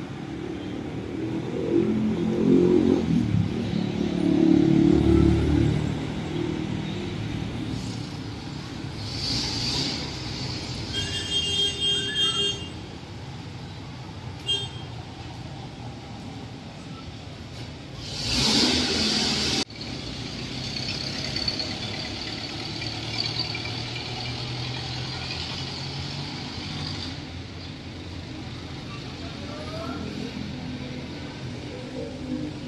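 Road traffic on a nearby street: a vehicle passes with a low engine rumble in the first few seconds, a brief high squeal follows about eleven seconds in, and a loud hiss lasting over a second comes about eighteen seconds in and cuts off sharply.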